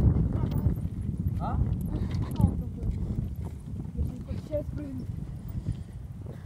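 Wind buffeting the microphone and irregular rattling and knocking of bicycles ridden over a bumpy dirt road, with brief snatches of voices.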